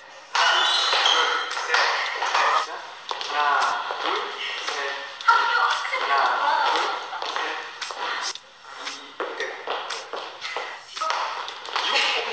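Several people's voices talking and calling out over one another, with scattered sharp taps and claps. A short high ping sounds about half a second in.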